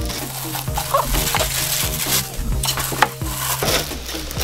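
Clear plastic bag crinkling and rustling as the wrapped pet feeder is handled, with many small crackles, over a steady low hum that stops shortly before the end.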